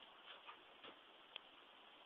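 Near silence: room tone with three faint, short clicks.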